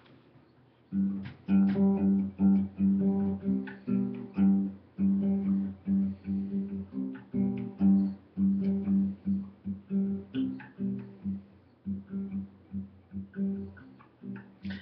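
Acoustic guitar played in a steady rhythm of plucked notes, starting about a second in and getting lighter near the end.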